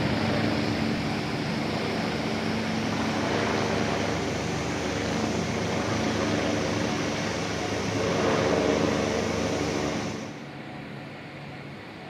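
Helicopter flying overhead: a steady engine and rotor noise with a low hum in it, swelling a little about eight seconds in, then dropping away about ten seconds in to a quieter, steady city background.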